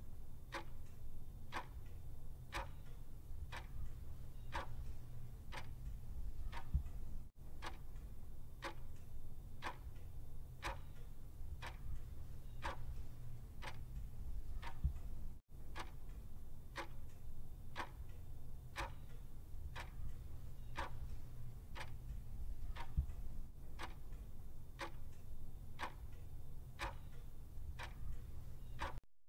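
Clock-ticking sound effect timing a half-minute countdown: quiet, even ticks a little more than once a second over a low steady hum.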